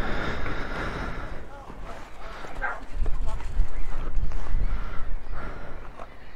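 A horse's hooves stepping on gravel as it is led and brought to a stop, under a gusty low rumble of wind on the microphone.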